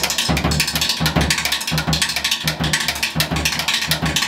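Drum kit played with sticks in a fast, dense flurry of strokes on drums and cymbals, with low drum thumps underneath.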